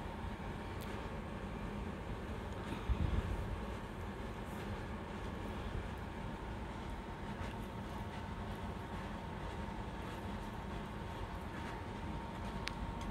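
Handling sounds of plastic floral tubes being set into a plastic rack: a soft bump about three seconds in and a few faint clicks, over a steady low room rumble.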